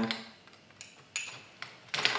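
Light clinks of laboratory glassware, test tubes and beakers knocking together as they are handled: about four short taps, the loudest a little past a second in.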